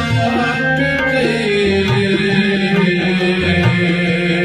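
Harmonium playing held, reedy notes as an instrumental passage of Saraiki folk music, over a hand-drum beat with a deep thud every second or two.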